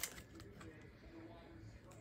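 Nearly quiet: a soft click at the very start, then faint sniffing and light handling of a plastic-packaged wax melt bar held up to the nose.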